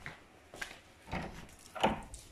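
Footsteps as someone walks indoors carrying the camera: three soft thuds about half a second apart, the last, near the end, the loudest.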